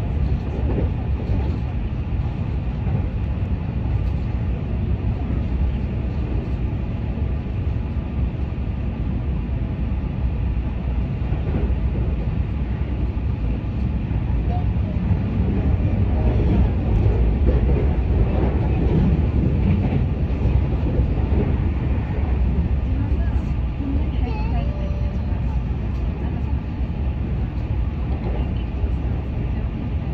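Keihan Railway train running at speed, heard from inside the passenger car: a steady rumble of wheels on rails and running gear, swelling a little about halfway through.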